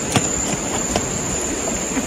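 A steady, high insect drone, typical of cicadas or crickets in roadside vegetation, over a continuous outdoor noise, with a few faint ticks.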